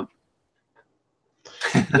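Near silence for over a second, then a man's short, breathy laugh near the end.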